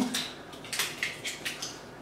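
Foil capsule being torn and peeled off the neck of a champagne bottle: a string of short, sharp crinkling rips.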